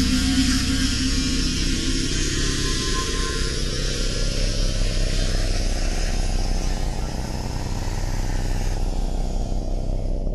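A loud, steady mechanical drone and hiss over a low hum. Part of it rises slowly in pitch through the first half or so.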